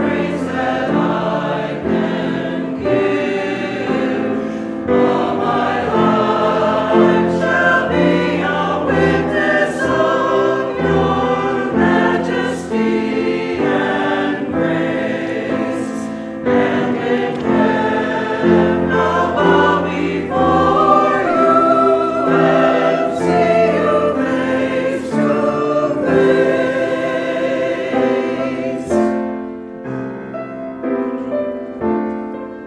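A choir singing a sacred piece, held notes with sung consonants, continuing throughout.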